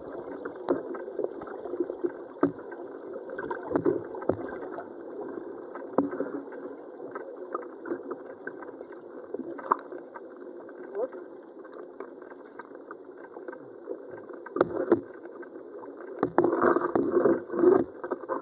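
Muffled rush of river current picked up by a camera held underwater in its housing, with scattered ticks and knocks; the knocks grow louder and more frequent near the end.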